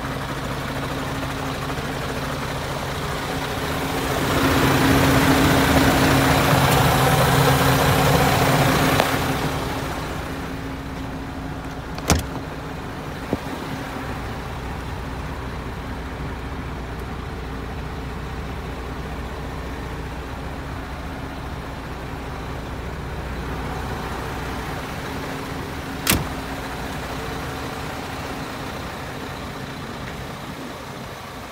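An MAN TGA 26.480 tractor unit's six-cylinder diesel engine idling steadily. About four seconds in, a loud rushing hiss rises over it for about five seconds and then fades. Sharp knocks come at about twelve seconds and again near the end.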